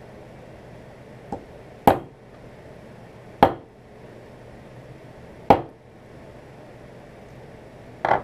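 Rock hammer striking a steel chisel set on a mineral crystal that rests on a stone slab: one light tap, then three sharp blows about two seconds apart, splitting the crystal along its cleavage planes.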